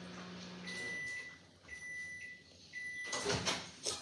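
A microwave oven's running hum cuts off about a second in and it gives three evenly spaced high beeps, signalling that the heating cycle has finished. Rustling from movement close to the microphone comes near the end.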